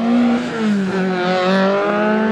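Engine of a Peugeot 205 race car at high revs as it accelerates away, its pitch dipping briefly about half a second in before holding steady.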